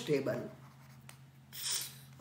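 A man's voice trailing off at the start, then near quiet with a faint click about a second in and a short hiss near the end.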